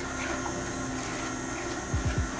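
Nama J2 slow (cold-press) juicer running, a steady motor hum as the auger turns and grinds oranges, celery and jicama in the hopper, with a low creak near the end.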